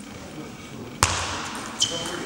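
Table tennis ball hit sharply by a paddle about a second in, echoing in a large hall, then a lighter knock of the ball with a brief high ring near the end.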